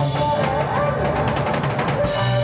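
Rock band playing an instrumental passage on electric guitar and drum kit, with a quick run of drum hits in the second half leading back into the guitar line.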